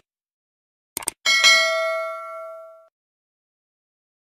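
Two quick clicks about a second in, then a single bright bell ding that rings and fades over about a second and a half: the click-and-bell sound effect of a YouTube subscribe animation.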